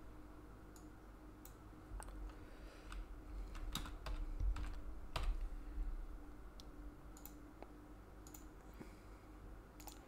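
Computer keyboard typing: a few scattered, irregular keystrokes, fairly quiet, over a faint steady hum.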